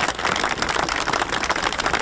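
Crowd applauding, many hands clapping at once.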